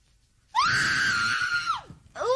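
A woman screams once in shock, starting about half a second in: one long, high scream that rises at the start, holds for about a second, then falls away.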